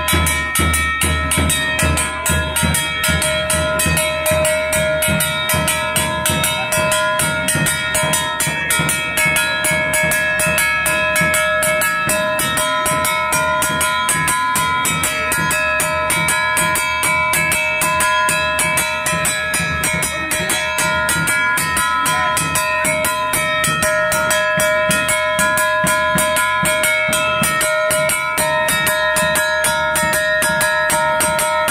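A temple bell rung rapidly and without pause, with drum beats in a fast, even rhythm over its steady ringing.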